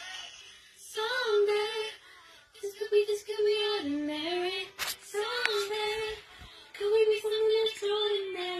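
A girl singing a pop song solo, in short phrases of held notes that slide up and down in pitch, with brief pauses between phrases. A single sharp click sounds just under five seconds in.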